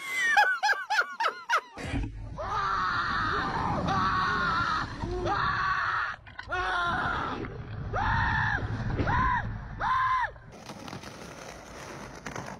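A young man screaming on a fast amusement ride: long sustained screams, then three shorter rising-and-falling screams near the end, with wind rumbling on the microphone underneath. A short burst of laughter opens it.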